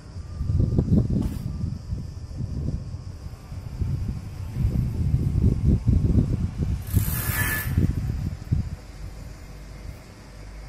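Wind buffeting the microphone in irregular gusts, heard as a low rumble, with a short sharp hiss of air about seven seconds in.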